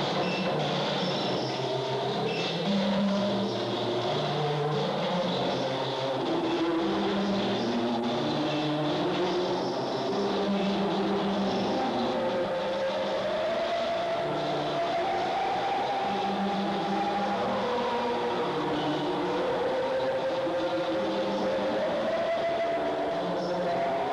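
Experimental electronic music played live: low synthesized tones step in pitch in short blocks about once a second. From about halfway through, a higher sustained tone slowly glides up and back down.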